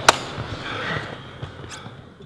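A single sharp slap right at the start as hands come together in a team huddle, followed by low gym room noise with faint rustling.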